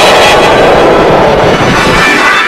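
Loud, heavily distorted logo-animation audio, put through 'G Major' pitch-shift and echo effects: a dense wash of noise with steady held tones over it.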